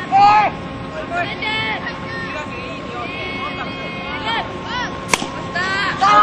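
Young players' high voices calling out across the field, and about five seconds in a single sharp crack of a bat hitting a pitched ball.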